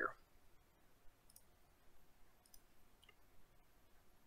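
Near silence with a few faint, sharp computer mouse clicks.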